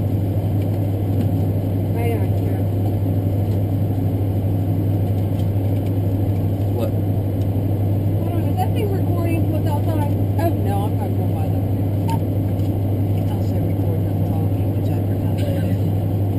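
A parked vehicle's engine idling, heard from inside its cab as a steady low drone, with faint voices in the background.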